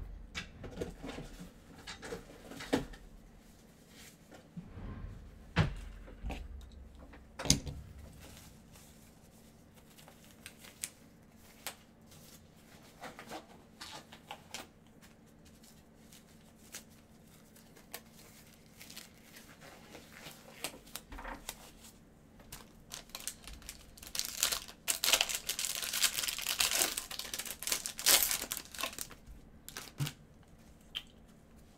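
Handling noise of trading-card packs being opened: scattered knocks and taps early on, then near the end a few seconds of loud crinkling and tearing as a foil card-pack wrapper is ripped open.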